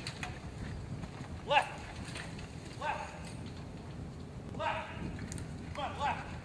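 Hoofbeats of a single pony pulling a carriage over soft footing, under four short, high voice calls spaced a second or more apart.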